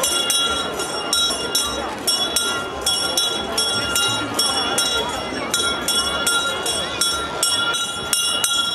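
Crowd murmur: many voices talking at once, with sharp clicks or knocks repeating two or three times a second and a few steady high tones that come and go.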